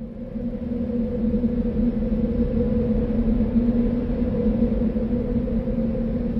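Steady low electronic drone: a held low note with a fainter note about an octave above and a rumble beneath, swelling in at the start. It is the sound bed of a company's closing logo ident.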